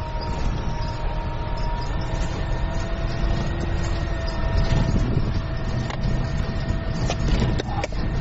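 Cabin noise of a Dual Mode Vehicle, the road-and-rail minibus, driving slowly in road mode: a steady low engine and road rumble with a faint whine. A few sharp clicks near the end.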